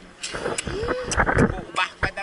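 A man's voice making wordless play sounds, with one pitch glide that rises and then falls near the middle, over water splashing.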